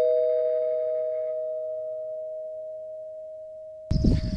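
The ringing tail of a two-note ding-dong chime, a doorbell-like sound effect, its two tones fading steadily and cut off abruptly near the end.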